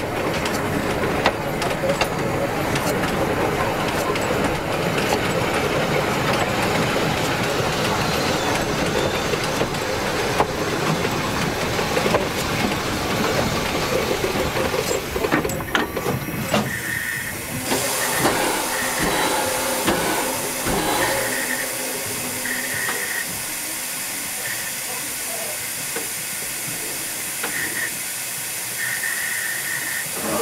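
Railway wagon's wheels rolling over the rails right under the microphone, a dense rumble with many clicks, slowing to a stop about 16 seconds in. After that a steady steam hiss remains, with short high squeaks coming and going.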